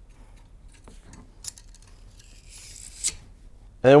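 Faint handling of a metal gun-cleaning rod and brush: a few light clicks, then a short scrape about two and a half seconds in that ends in a sharp click.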